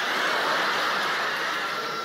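Theatre audience laughing together, a steady wash of crowd laughter that eases off slightly toward the end.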